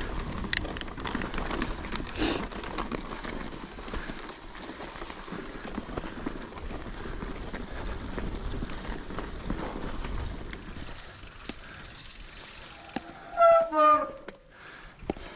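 Calibre Triple B full-suspension mountain bike rolling fast over a muddy woodland trail, with a steady rumble of tyres and rattling. Near the end come two short, loud squeals from the disc brakes as the bike pulls up to a stop.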